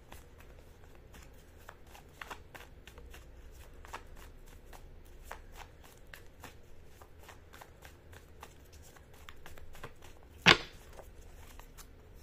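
A deck of tarot cards being shuffled by hand: a soft, steady run of quick card flicks and slides, with one sharper, louder click about ten seconds in.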